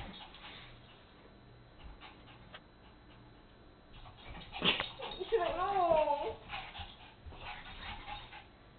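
Two small dogs playing rough on carpet, mostly quiet at first; past the middle one dog gives a brief vocal sound of about a second that wavers up and down in pitch, just after a sharp click.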